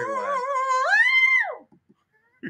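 A man's high falsetto voice holding a long wavering "ooh" note, then leaping up an octave about a second in and sliding off.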